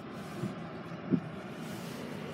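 Steady, even hiss inside the cabin of a 2017 Hyundai Tucson with its engine idling in Park, with one short low sound about a second in.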